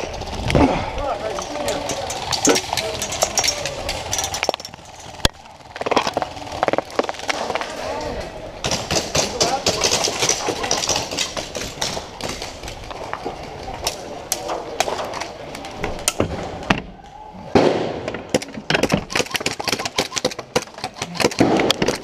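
An airsoft skirmish: scattered sharp cracks and clusters of rapid clicks from airsoft guns, thickest about halfway through and near the end, with indistinct voices in the background.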